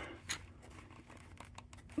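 Faint handling noise: a light click about a third of a second in, then a few soft clicks and rustles near the end.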